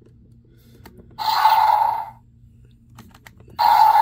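Battle Chompin Carnotaurus action-figure's electronic dinosaur sound effect from its small built-in speaker, set off twice by pressing the toy, each burst about a second long, with small plastic button clicks between them.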